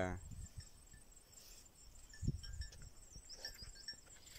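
Faint insects chirping, short high chirps scattered through, with a low thump about two seconds in.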